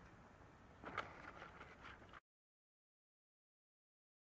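Near silence: a faint background hush with one brief soft tick about a second in, then the sound cuts out to dead silence a little past halfway.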